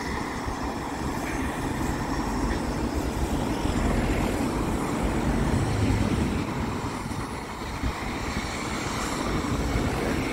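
Road traffic on the approach to a level crossing: the steady tyre and engine noise of cars driving over the crossing, heard outdoors.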